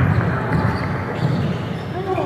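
A basketball being dribbled up the court: repeated bounces on the gym floor over a steady background of hall noise.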